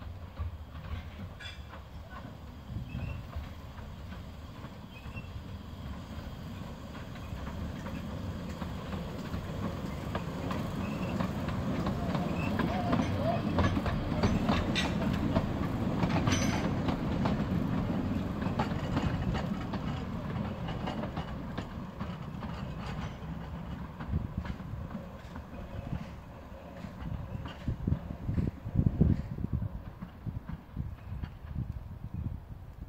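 Narrow-gauge train hauled by a Decauville 0-4-0 steam locomotive passing. It grows louder to a peak about halfway through, then fades, with wheels clicking over the rail joints and a few heavier knocks near the end as the carriages go by.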